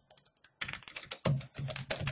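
Typing on a computer keyboard: a quick run of keystrokes that starts about half a second in, after a brief lull.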